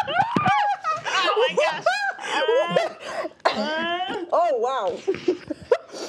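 Two women laughing and exclaiming without clear words, their voices swooping up and down in pitch.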